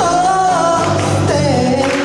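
Live band music: a woman sings lead into a microphone, holding a wavering note, over guitar accompaniment.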